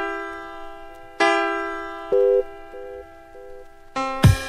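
Intro of an instrumental hip-hop beat: a sustained chord struck twice, each time slowly fading, over a short pulsing tone that repeats several times a second. Drums come in at the very end.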